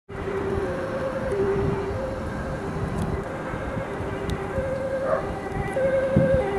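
Dutch ambulance two-tone siren sounding on an urgent run, switching back and forth between a higher and a lower note about every half second, with a low rumble underneath.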